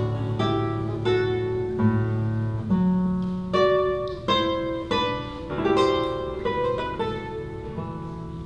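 Solo nylon-string classical guitar playing a slow passage of plucked single notes and chords. Each rings out and fades before the next, about one every half second.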